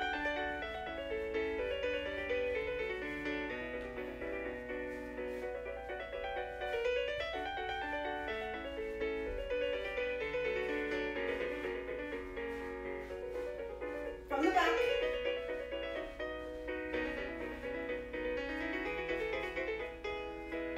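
Recorded solo piano music for a ballet barre exercise, a steady flow of notes throughout. About two-thirds of the way through, a brief loud sliding sound rises and falls over the piano.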